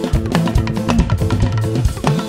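Live band playing upbeat music: a drum kit keeping a fast, busy beat under a moving bass line.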